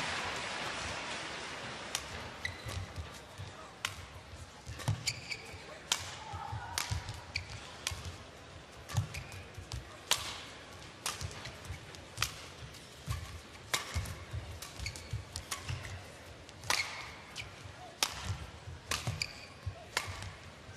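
Badminton rally in an indoor arena: a long run of sharp racket strikes on a shuttlecock at irregular intervals, one or two a second. A crowd murmur dies away over the first few seconds.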